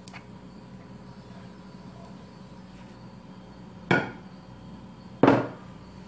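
A spoon knocked twice against a dish, about a second and a half apart, each knock sharp with a short ringing tail.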